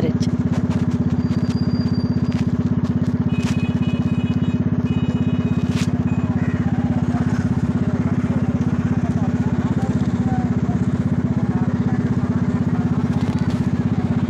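Motorcycle engine running at a steady road speed, heard from the pillion seat, with a fast even putter and wind rush. A brief high tone sounds a few seconds in.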